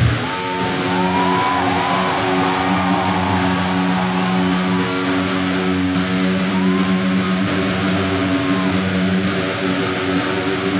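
The full band's final hit cuts off at the start, leaving an amplified electric guitar sustaining a steady droning chord, with feedback tones sliding and wavering above it.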